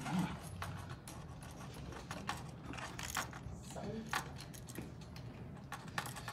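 Irregular small clicks and rattles of hand tools and wire being worked quickly on a tabletop.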